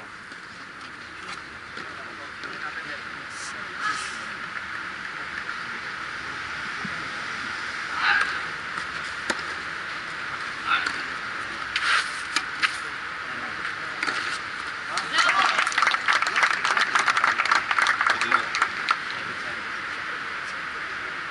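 Outdoor clay-court tennis match: a steady background hiss with a few isolated sharp hits of racket on ball, then about four seconds of spectators clapping near the end.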